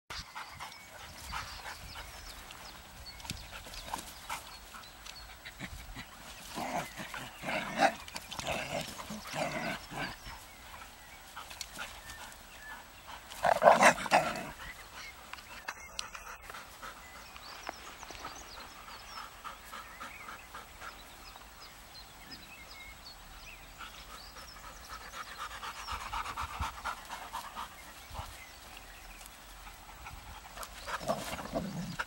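Dogs vocalizing as they play together, sound coming in irregular bursts. There is a loud outburst about halfway through and a quick run of short repeated sounds a few seconds before the end.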